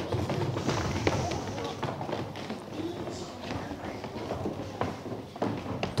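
Children's feet running and thudding on a stage floor, many quick irregular steps, over a low murmur of voices.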